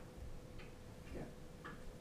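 Three faint short ticks, about half a second apart, over a steady faint hum.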